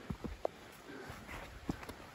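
Quiet footsteps on a forest trail of earth and fallen leaves: a few soft, irregular steps.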